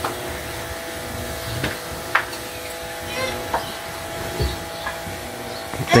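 Pressure washer's electric motor running with a steady hum, with a few soft clicks and rustles of someone settling onto a mattress.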